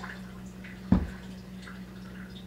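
A single soft thump about a second in as the loaf of soap is handled on the wooden board of a wire cheese cutter, over a faint steady low hum in the room.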